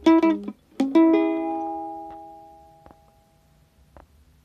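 Ukulele played keroncong-style in C minor: a few quick strummed chords, then a final chord about a second in that rings out and fades away over a couple of seconds.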